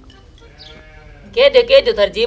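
A loud sheep-like bleat with a fast, even wavering, starting a little past halfway through.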